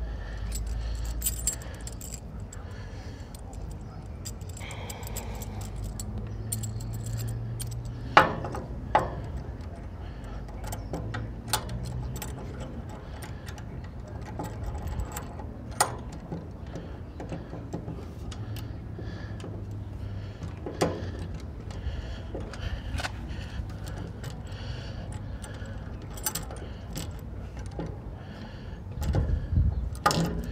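Steel G-clamp being handled and fitted against a trailer's metal number-plate panel: scattered sharp clinks, clicks and taps of metal on metal over a steady low hum.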